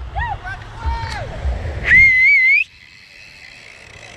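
Short shouted calls, then about two seconds in a person gives one loud whistle, a wavering tone that climbs slightly and lasts under a second.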